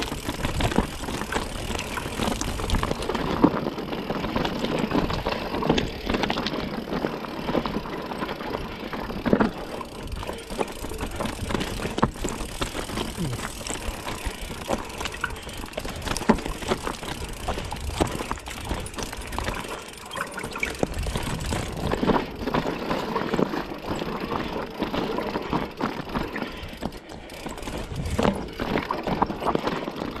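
Mountain bike riding down a rocky trail of loose stones: tyres crunching over the rocks, with many short knocks and rattles from the bike throughout.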